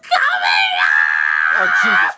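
A person's loud, high-pitched wailing scream, a performed crying outburst: it rises in the first half-second, holds one high note for about a second, and breaks off near the end.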